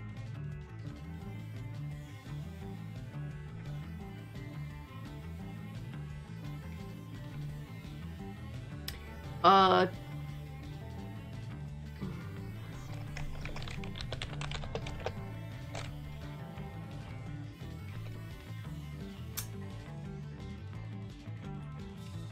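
Background music playing steadily under computer keyboard typing, with a run of key clicks a little past halfway. One short wavering vocal sound just before the middle is the loudest moment.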